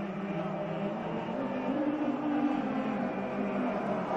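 Male voice choir singing long held notes, the tune stepping up to a higher note about two seconds in and back down.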